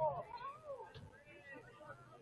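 Faint, distant shouts and calls from players and spectators across the field, several drawn-out voices rising and falling in pitch.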